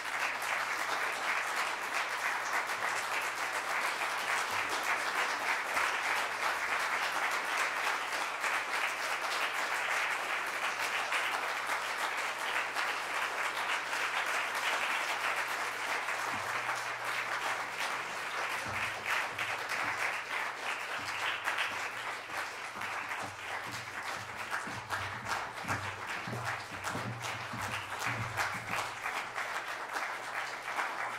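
Audience applause in a small concert hall: dense, even clapping that begins abruptly and eases a little after about twenty seconds.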